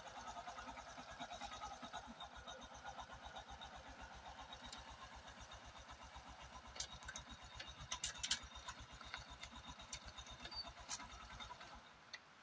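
A low, steady, rapidly pulsing rumble like a running engine, with a few sharp ticks in the second half; it cuts off just before the end.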